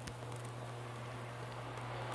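Quiet room tone: a steady low hum under faint background noise, with one faint tap right at the start.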